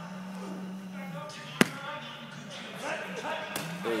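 A single sharp smack about one and a half seconds in, with a fainter click near the end, over faint voices.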